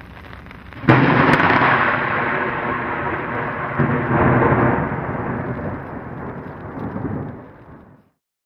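Thunderclap sound effect: a sudden loud crack about a second in, then a long rolling rumble with a second swell around four seconds in, fading out near the end.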